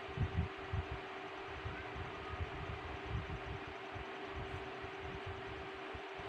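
Steady mechanical hum of a room fan with a faint constant tone, broken by irregular soft low thuds.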